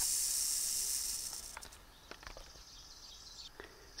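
Yellow-phase timber rattlesnake rattling its tail, a steady high buzz that dies away about a second and a half in. This is the coiled snake's defensive warning.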